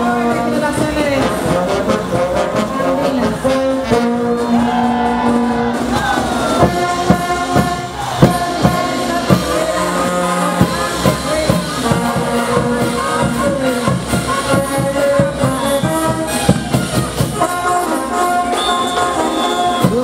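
Brass band playing caporales music, with sousaphones and trumpets carrying held notes over a marching beat, and the jingle of the dancers' boot bells.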